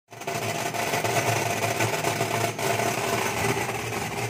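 Apple optical colour sorter running as it sorts kalonji (nigella) seeds: a steady mechanical buzz with a constant low hum, and a single click about two and a half seconds in.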